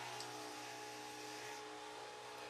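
Quiet room tone with a faint steady hum and one faint tick just after the start.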